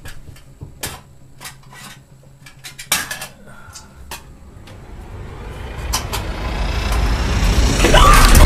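A few sharp knocks and taps of a stick against a wall and ceiling, the loudest about three seconds in. Then a rushing noise with a low rumble swells steadily louder over the last three seconds.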